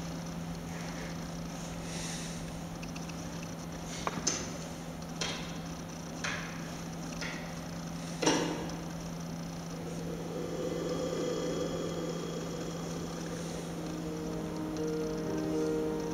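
Film-trailer soundtrack playing over the planetarium's speakers: several sharp hits in the first half, the loudest about eight seconds in, then a swelling sound, with held musical notes coming in near the end. A steady low hum runs underneath.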